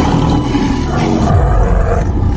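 A lion's roar laid over background music, dying away after about a second, leaving low music.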